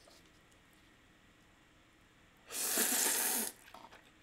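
A single noisy slurp of chili oil noodles being drawn into the mouth, about a second long, starting about two and a half seconds in.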